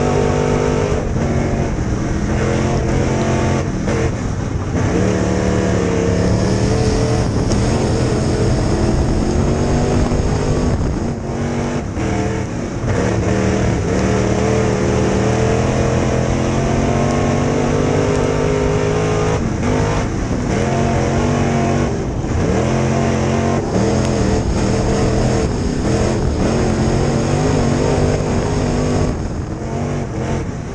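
Dirt late model's V8 engine at racing speed, heard from inside the car. The pitch climbs steadily for several seconds at a time and drops briefly several times as the throttle is lifted for the turns.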